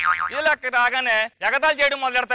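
A man speaking Telugu on stage, with a brief wavering, warbling tone right at the start.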